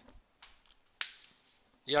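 A single sharp click about a second in, with a brief ring after it.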